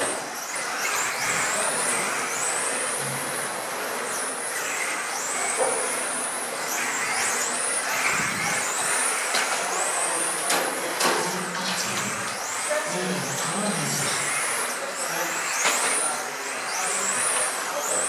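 Electric 1/10-scale touring cars with 17.5-turn brushless motors lapping a track. Their high motor whines rise and fall again and again as they accelerate and brake through the corners.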